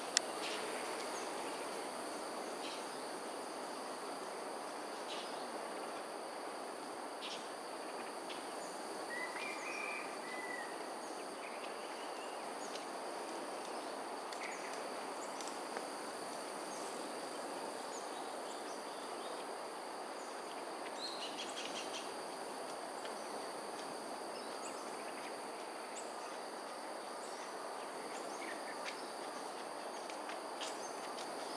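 Outdoor ambience of insects droning steadily in two high, unchanging tones over an even background hiss, with a few brief, high bird chirps scattered through it. A single sharp click sounds right at the start.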